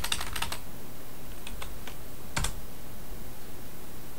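Computer keyboard typing: a quick run of key presses in the first half-second, a few faint taps, then one louder click a little past the middle.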